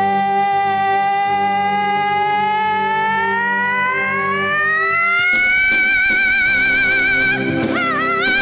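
A woman singing one long held note into a microphone over an instrumental backing track; the note slides upward midway and is held with vibrato. Heavier backing instruments come in about five seconds in.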